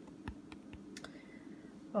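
Fingertip tapping lightly on a clear plastic stamp set in its packaging: a few faint, irregular clicks.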